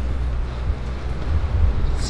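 Low, steady rumble of wind buffeting the microphone, with a few soft low thumps in the second half.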